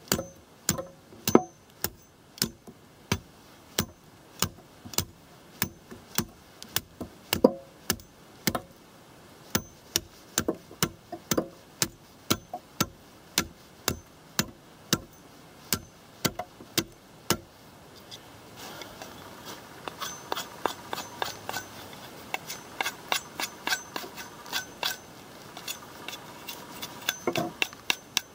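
Ontario RTAK II large knife chopping a point onto a thin wooden pole, with sharp chops about two a second. Past the halfway mark the strikes turn lighter, quicker and fainter, over a steady rasp of cutting.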